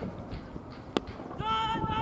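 A sharp crack of a cricket bat striking the ball about a second in, followed by a loud, high-pitched shout from a player that lasts about a second.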